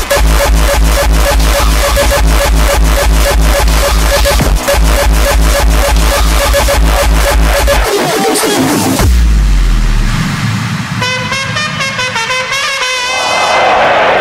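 Frenchcore DJ mix: a fast, pounding distorted kick-drum beat with heavy bass for about eight seconds, then the beat drops out into a breakdown with a low bass swoop and a stepping high synth melody.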